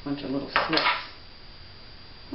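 Brief metallic clatter of a pair of steel scissors being picked up off a tabletop, about half a second in, among a few mumbled words.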